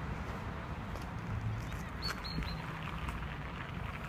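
A small songbird singing faintly: a few short, high chirps about halfway through, over a low rumbling background.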